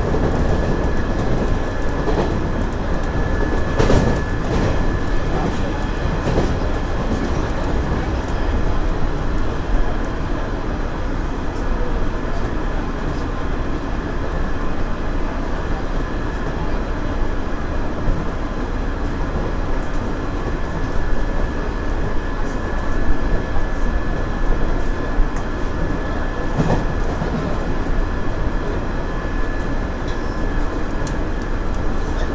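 JR Central 117 series electric train running at speed, heard from the cab: steady wheel-and-rail rumble and running noise. A few louder knocks come as the wheels cross rail joints and points, the strongest about four seconds in.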